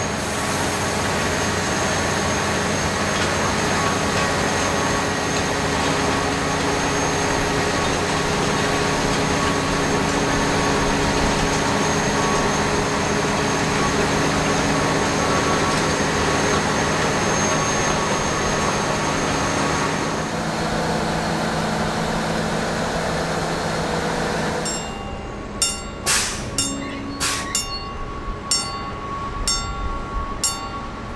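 Track-tamping machine running steadily, its machinery giving a constant hum with a thin high whine. In the last five seconds the sound drops to a quieter run broken by a series of sharp knocks and clanks.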